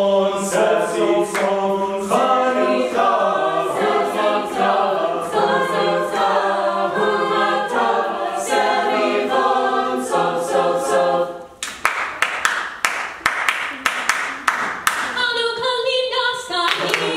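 Mixed-voice a cappella group singing sustained chords in close harmony, with a beat of sharp clicks over it. About twelve seconds in, the chords stop for a few seconds of rapid sharp percussive hits, then singing resumes near the end.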